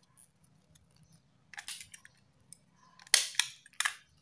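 Hand stapler squeezed twice on folded paper near the end, each a sharp crunching snap, the first the louder. Paper rustles briefly about a second and a half in.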